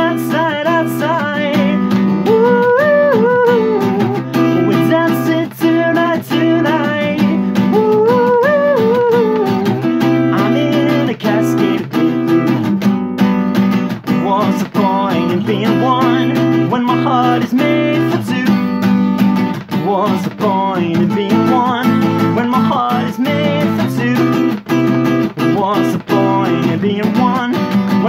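Acoustic guitar strummed in a steady rhythm while a man sings over it, his voice gliding up and down through the melody.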